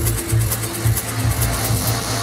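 Techno from a live DJ set: a kick drum beating about twice a second under a swell of hissing noise that builds in the highs.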